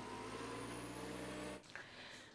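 Sugar beet harvester engine running steadily and faintly, with a thin high whine over it; it cuts off about one and a half seconds in.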